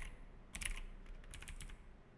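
Computer keyboard keys clicking as a few characters are typed: a short run of keystrokes about half a second in, then several more about a second in.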